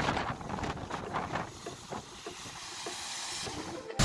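Mountain stream rushing and splashing over rocks, growing quieter after about two seconds.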